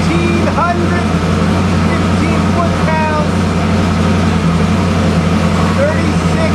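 A loud, steady low mechanical drone that holds its pitch without revving, with faint voices in the background.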